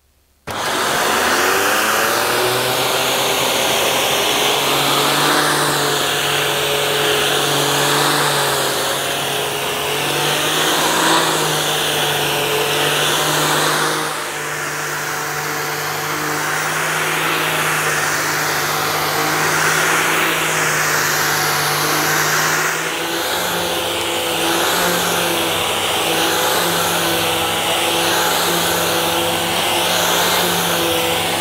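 Shark vacuum cleaner switched on about half a second in, its motor whine rising as it spins up, then running steadily with the pitch wavering slightly. It is vacuuming pet hair from carpet through the pet turbo brush, whose bladed roller is spun by an air-driven turbine.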